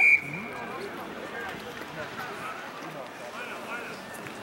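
A single short, loud blast of a referee's whistle right at the start, fading within half a second, followed by distant shouting and talk from players and spectators on the rugby pitch.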